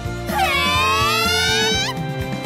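A long, surprised cry of 'Huh!?' from girls' voices, the pitch dipping and then rising, over background music.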